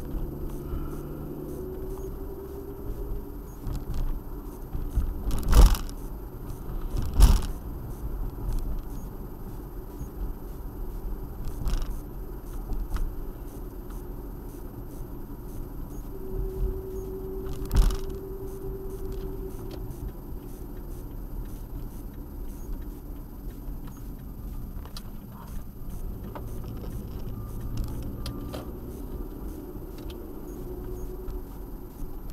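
Car driving, heard from inside the cabin through a dashcam: steady road and engine rumble with a faint hum, broken by a few sharp knocks, the loudest about five and a half, seven and eighteen seconds in.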